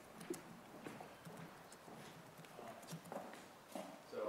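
Faint, irregular footsteps of hard-soled shoes on a hard floor, a person walking up to a microphone, with a few light knocks and shuffles.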